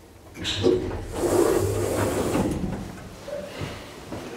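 Elevator doors opening on arrival at a floor: a mechanical sliding and rattling with a low hum that lasts about two seconds, then trails off.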